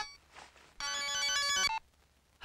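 Mobile phone ringtone for an incoming call: an electronic tune of steady tones. It falls silent briefly, plays one more phrase about a second in, and cuts off shortly before the end.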